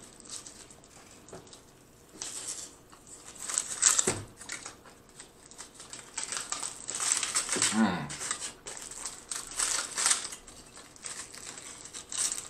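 Aluminium foil wrapper on a burrito crinkling as it is handled and peeled back, with close-up chewing and mouth sounds from eating the burrito. A brief hummed vocal sound comes about eight seconds in.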